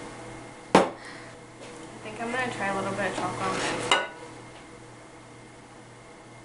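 A sharp clink of dishes or cutlery about a second in. It is followed by a couple of seconds of voice with no clear words, which ends in another click, then quiet kitchen room tone.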